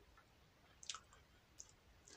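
Near silence: room tone, with a faint short click about a second in and a smaller one a little later.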